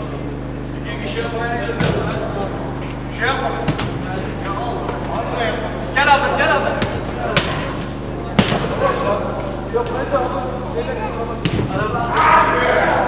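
Players shouting and calling to each other in an indoor five-a-side football hall, with several sharp thuds of the ball being kicked, over a steady low hum.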